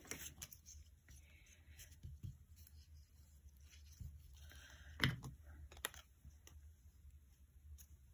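Faint handling of paper cut-outs and card on a craft table: light rustles and small clicks, with one sharper tap about five seconds in.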